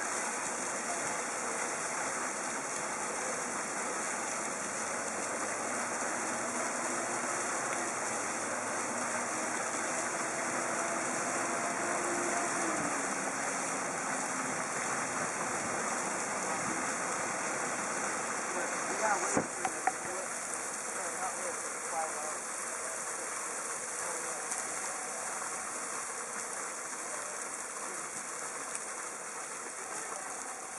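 Geyser fountain's water jets spraying up and splashing onto rocks: a steady rushing hiss. A few sharp knocks stand out about two-thirds of the way through.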